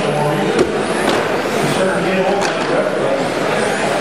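Indistinct talking in a large hall, with a sharp click about half a second in.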